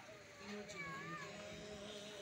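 Low background murmur of voices and a steady hum, with one short high call that rises and falls in pitch about a second in.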